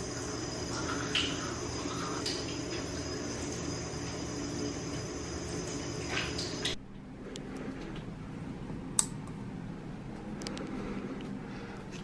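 Steady hum of a bathroom exhaust fan, with faint scrubbing from a manual toothbrush. About seven seconds in the hum cuts off abruptly to quieter room tone with a few small clicks, one sharper than the rest a couple of seconds later.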